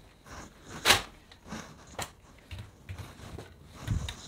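Light knocks and clicks of kitchen handling, dishes and utensils being picked up and set down, with a short swish about a second in, a sharp click about two seconds in and a dull thump near the end.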